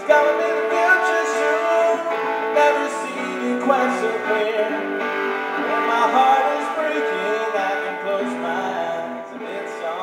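Live solo song on guitar with a singing voice, strummed chords sustaining under the melody, growing quieter toward the end.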